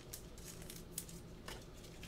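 Faint handling of trading cards by gloved hands: a few soft, short clicks as cards are set down and picked up.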